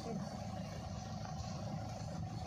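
Steady low background rumble in a lull between talk, with faint voices in the background.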